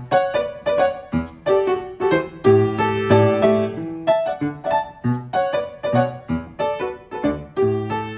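Grand piano playing a song introduction: quick, bouncy repeated chords, several a second, over bass notes.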